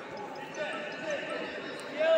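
Sports-hall background: a steady murmur of distant voices echoing in a large room, with a few faint thumps.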